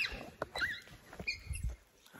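The phone being handled and turned round, with scattered knocks and rubbing, and a few short, faint, high squeaky cries from a young jaguar.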